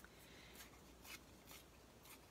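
Faint, brief sounds of paper being torn by hand, a few times over.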